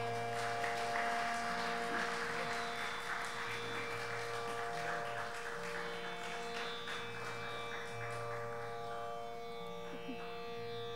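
Tanpura drone ringing on after the singing has stopped: steady, buzzing plucked strings with the low notes repeating in a slow cycle, easing off slightly near the end.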